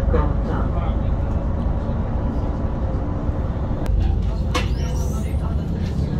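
Bus heard from inside the passenger cabin while driving: a steady low engine drone and road rumble, with a faint steady hum and a couple of short clicks about two-thirds of the way through.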